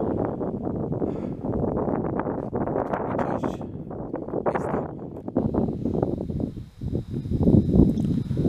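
Outdoor wind noise on the microphone with rustling of leaves: an uneven noise that rises and falls. A faint steady high tone joins about five seconds in.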